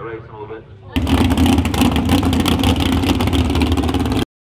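A muffled voice for about a second, then a sudden cut to a loud mud drag truck's engine running hard, with a rapid crackle through it; it stops abruptly just after the end.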